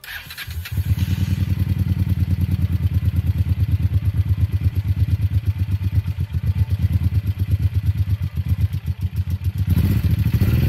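Honda XL600V Transalp V-twin starting and settling within the first second into a steady, rapidly pulsing idle, heard through an open aftermarket exhaust that has its muffler insert removed. The engine picks up slightly just before the end.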